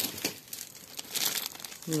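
Clear plastic wrapping on a multipack of soap bars crinkling in short, irregular rustles as it is picked up and handled.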